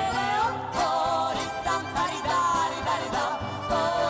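Live Romani folk dance music: guitar strummed in a steady, driving rhythm under a gliding, wavering melody line with a violin in the band.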